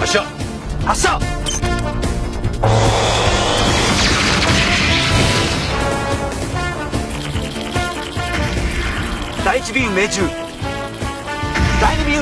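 Science-fiction drill beam weapon sound effect: a sudden loud rushing blast about two and a half seconds in, lasting around four seconds, over background music.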